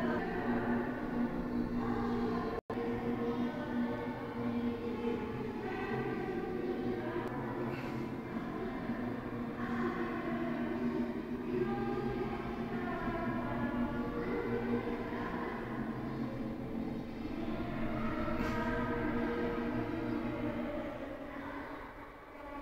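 Music of long, sustained chords with the notes changing every second or two, broken by a brief dropout about three seconds in.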